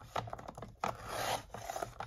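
Sliding paper trimmer's blade carriage drawn along its rail, cutting through scrapbook paper: a scraping rasp about a second and a half long, strongest in the middle.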